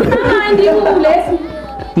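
Speech only: a man talking close up, with several people chattering in the background.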